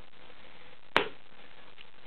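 A single sharp click about a second in, over quiet room tone.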